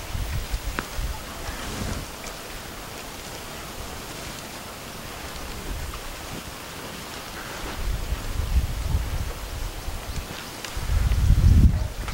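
Outdoor field ambience with a steady hiss, broken by low gusts of wind buffeting the microphone, strongest near the end.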